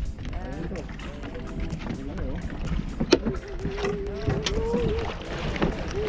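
Steady low rumble of wind and water around a small open fishing boat at sea, with people's voices and a few sharp clicks in the second half.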